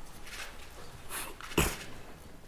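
Rustling and shuffling from a seated audience in a large press hall, with one loud, short thump about one and a half seconds in.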